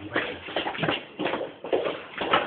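Rustling and rubbing of a handheld camera being moved and handled, in irregular short bursts.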